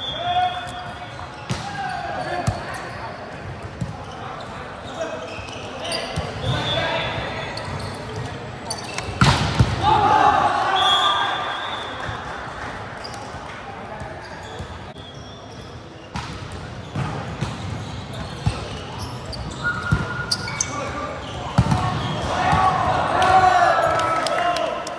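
Indoor volleyball play in a large, echoing gym: the ball struck with sharp smacks, loudest about nine seconds in and again near twenty-two seconds, and players shouting to each other, loudest right after each hit.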